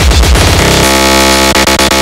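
Hardcore electronic music: fast, distorted kick drums that give way about half a second in to a harsh, sustained distorted synth tone.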